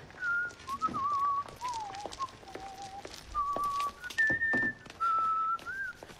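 A man whistling a tune by mouth: single clear notes held in short phrases, stepping up and down in pitch with brief breaks between phrases.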